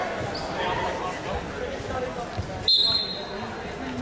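A referee's whistle blows once, a short shrill blast about two and a half seconds in, starting the wrestling bout. Around it are background voices echoing in a large gym and a few dull thumps.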